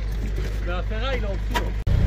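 Engine rumbling steadily under speech while an old Mercedes van is jump-started. Near the end the sound breaks off sharply, and then the van's engine is idling with a low pulsing rumble, having just started.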